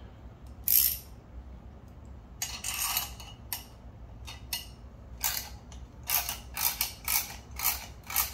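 Ratcheting combination wrench clicking as it turns the threaded rod of a spring compressor on a motorcycle rear shock absorber. Scattered clicks at first, then a steady back-and-forth clicking about twice a second near the end.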